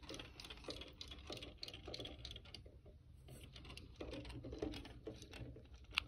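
Zuru Robo Turtle toys paddling their battery-driven flippers in shallow water in a metal roasting pan: a faint, rapid, irregular clicking and light splashing, quieter for about a second in the middle.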